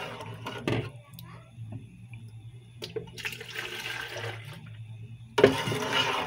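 Thick champurrado being stirred in a metal pot with a plastic spoon: the liquid swishes and sloshes in a few bursts, and a low steady hum runs underneath.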